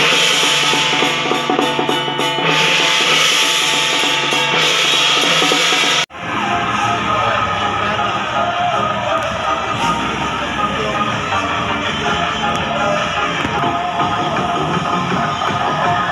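Loud procession music with drums and percussion, broken by an abrupt cut about six seconds in. After the cut, loud music plays again, with the ornate parade float trucks in the scene as its likely source.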